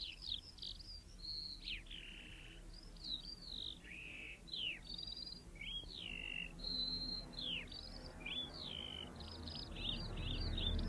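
Birds chirping and singing: a steady stream of quick, varied high chirps and whistles, several a second, many sliding downward in pitch.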